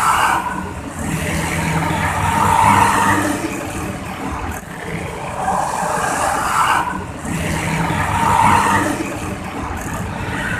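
Intercity coach buses accelerating hard as they pull away and pass through traffic, their engines swelling and easing among car and motorbike traffic. The same few seconds are heard twice in a row.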